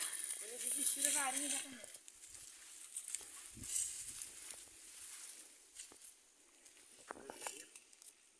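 A faint, distant voice calling out in the first two seconds, then quiet outdoor sound with a soft thump midway and a few faint clicks near the end.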